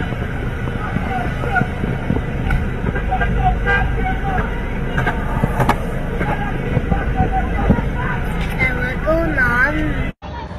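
Idling school bus and road traffic at an intersection with people shouting, and a few sharp knocks.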